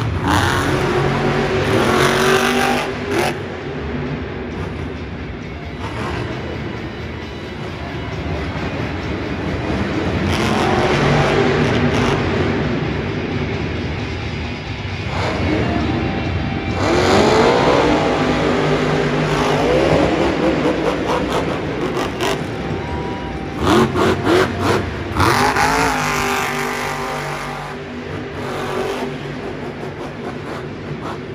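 Monster truck's supercharged big-block V8 running hard through a freestyle run, its pitch repeatedly climbing under throttle and dropping off again. A quick series of sharp bangs comes about three-quarters of the way through.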